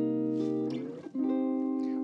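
Clean-toned Sadowsky electric guitar playing jazz chords of a two-five progression in a minor key. One chord rings, then about a second in a new chord is struck and rings on.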